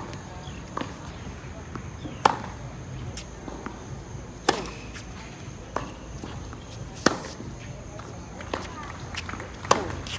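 Tennis balls struck back and forth in a groundstroke rally: sharp racket-on-ball hits about every two and a half seconds, with fainter ball bounces on the hard court between them.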